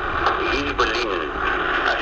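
Speech only: a caller's voice talking over a telephone line, thin and narrow in tone.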